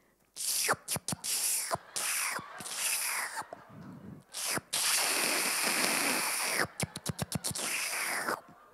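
A woman making mouth sound effects close into a handheld microphone, imitating a man's slurping and licking. It comes as a series of short hissing, slurping bursts, a longer hiss in the middle, then a quick run of tongue clicks near the end.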